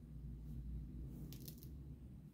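Faint handling noise: a fabric inline-skate liner being turned in gloved hands, with a couple of soft scrapes about one and a half seconds in, over a low steady hum.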